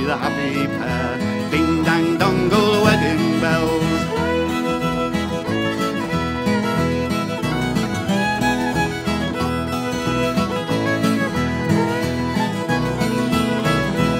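Instrumental break in a folk song: a fiddle playing the tune over acoustic guitar accompaniment, with a steady rhythm.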